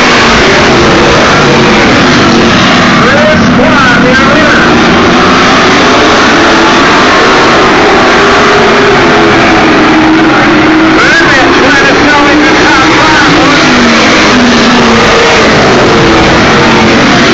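A pack of late model stock cars racing around a short oval track, their V8 engines running hard, rising and falling in pitch as the cars pass and go through the turns. Loud and overloaded on the recording.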